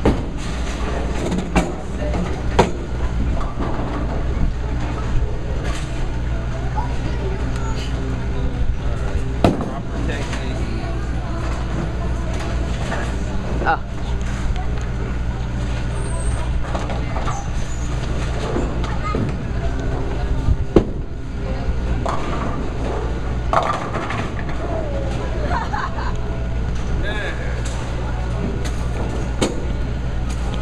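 Bowling alley din: a steady low rumble with background chatter of other bowlers and scattered sharp knocks and clatters of balls and pins, the loudest about ten and twenty-one seconds in.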